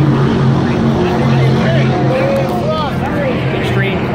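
Steady low engine drone from superboats racing offshore and helicopters flying over them. People's voices join from about halfway through.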